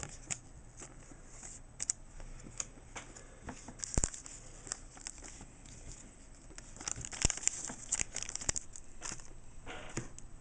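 Pokémon trading cards and a clear plastic card sleeve being handled: crinkling plastic and rustling cards with a few sharp clicks, busiest about seven to nine seconds in.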